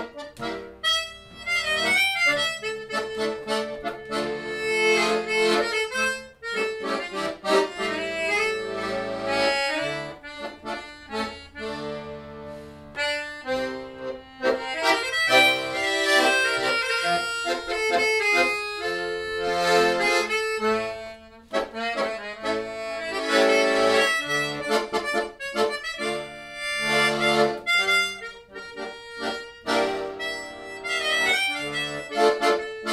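Piano accordion and melodica playing a Hungarian csárdás as a live duet, with quick runs of reedy notes over held chords.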